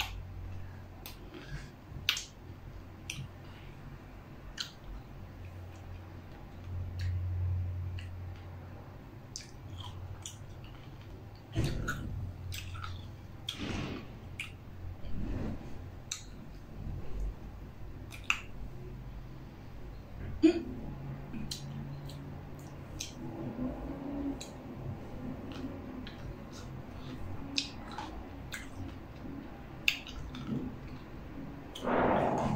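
A person chewing a mouthful of pickle wrapped in cotton candy (candy floss), with many small scattered mouth clicks and smacks.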